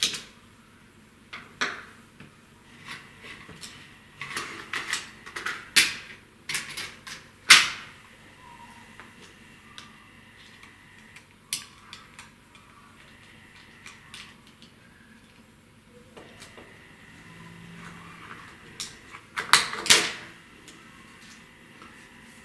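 Small plastic clicks, scrapes and knocks from the casing of a portable DCC player being worked apart with a small screwdriver, in scattered bursts. The loudest knock comes about seven and a half seconds in, and a tight cluster of clicks follows near the end as the case comes apart.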